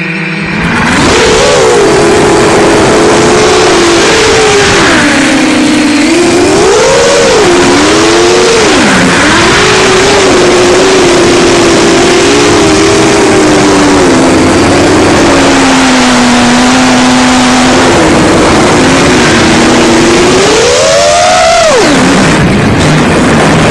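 Brushless motors (Racerstar BR2507S) and tri-blade 7-inch props of an FPV quadcopter whining loudly, heard from the quad's onboard camera, the pitch rising and falling with the throttle. The motors spin up about a second in, and near the end a big rising swell drops off sharply.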